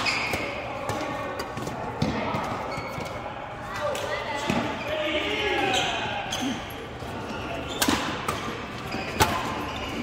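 Badminton rackets striking a shuttlecock during a doubles rally: several sharp cracks spaced a few seconds apart, with players' voices and chatter running underneath.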